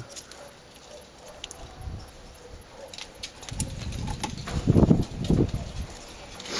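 Hand handling noise at the fittings of an LPG vaporiser: a few small clicks, then a louder, rough low rumble about four to five seconds in.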